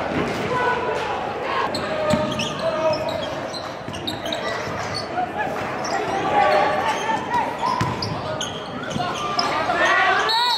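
Gym sound of a basketball game: a basketball dribbled on a hardwood court, with short high squeaks of sneakers and voices of players and spectators echoing in a large hall.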